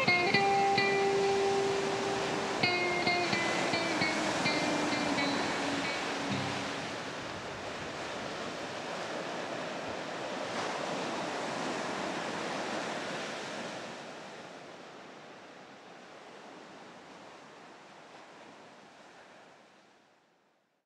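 A song's outro: the last plucked guitar notes ring over a steady wash of ocean waves. The notes stop about seven seconds in, and the wave sound slowly fades out through the rest.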